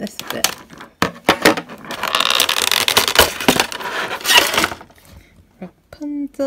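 Clear moulded plastic packaging tray crackling and clicking as it is flexed and a small figure is pulled out of it, with a run of dense crinkling in the middle.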